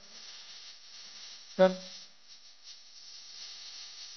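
Faint steady background noise in a large hall, with one short voiced sound, a single syllable from a person, about a second and a half in.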